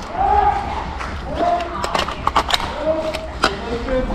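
Several short shouted calls from people some way off, with a few sharp clicks and knocks in between.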